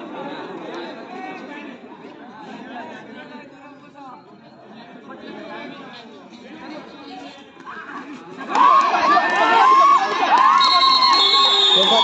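Spectator crowd chattering, then, about eight and a half seconds in, breaking into loud shouting and cheering as a kabaddi raid ends with points scored.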